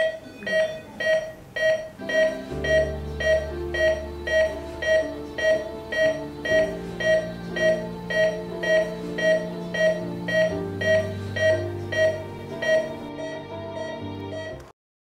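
A hospital patient monitor beeps steadily with the pulse, about twice a second, over a sustained low musical score that comes in about two and a half seconds in.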